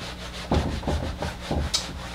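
Felt whiteboard eraser rubbing across a whiteboard in several quick back-and-forth strokes, starting about half a second in.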